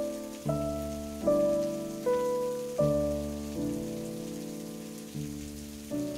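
Slow background piano music: single notes and chords struck about once a second, each ringing and fading away, over a faint steady hiss.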